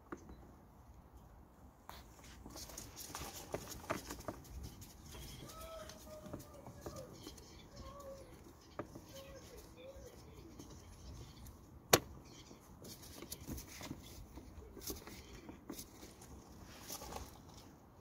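Screwdriver working the small mounting screws of a mass airflow sensor in a car's engine bay: faint scrapes and light clicks of metal and plastic, with one sharp click about twelve seconds in.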